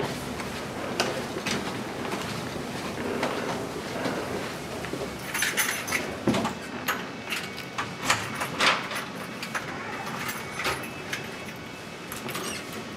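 Rolling suitcase wheeled along a carpeted hallway: a steady low rumble of the wheels with scattered clicks and rattles from the luggage and footsteps, busiest around the middle.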